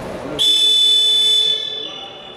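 Arena horn at a basketball game sounding one long, high, steady blast of about a second, then fading out.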